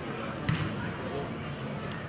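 A football kicked once, a sharp thud about half a second in, over faint voices on the pitch.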